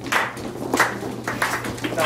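A few scattered, irregularly spaced sharp hand claps just after the dance music has stopped.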